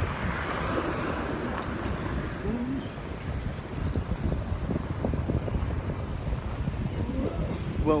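Wheels rolling over a concrete sidewalk: a steady low rumble with many small irregular knocks.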